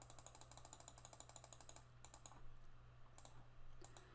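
Faint clicking of a computer mouse: a fast run of even clicks for about two seconds while scrolling through a list, then a few single clicks.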